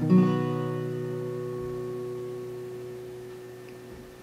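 An acoustic guitar capoed at the fourth fret is strummed once on a G chord shape, sounding as B major, and left to ring, fading slowly.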